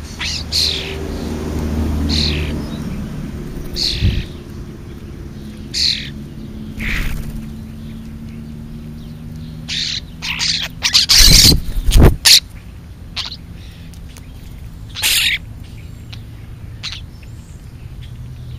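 Birds giving short, high chirping calls every second or two, with a quick run of loud knocks near the middle as the feeding birds bump and peck right at the camera.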